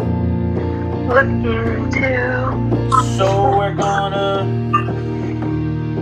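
Electronic keyboard played with held chords and single notes ringing on. A voice with sliding pitch sounds over it through the middle part.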